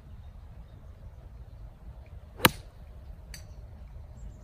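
Golf iron striking a ball off grass: one sharp click about two and a half seconds in, followed by a much fainter tick a second later, over a low steady rumble.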